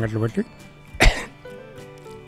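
A man coughs once, a single short, sharp cough about a second in, over faint background music.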